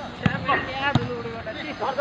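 Football kicked twice on a dirt pitch: two sharp thuds about two-thirds of a second apart, amid players' shouts.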